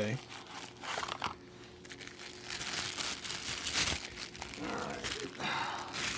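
Plastic wrapping crinkling as it is handled while an oil filter is unwrapped and drawn out of its box. The crinkling comes in irregular bouts, with a quieter gap after about a second and a busier stretch after about three seconds.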